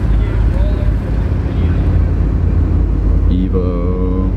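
Steady low rumble of a car creeping in a slow line, heard from inside the cabin, with a voice starting near the end.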